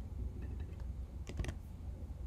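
Computer keyboard keystrokes, a few faint taps and then a quick cluster of clicks about one and a half seconds in, as API keys are pasted into a web form.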